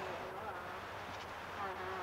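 Steady low hum and hiss under faint, indistinct voice sounds, once about half a second in and again near the end.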